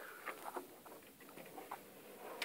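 Faint scattered scuffs and light taps of a person moving close to the microphone, feet or clothing brushing on stone and fabric, with no steady sound under them.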